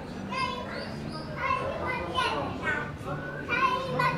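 A young child's high-pitched voice chattering and calling out in short phrases, with other voices around it.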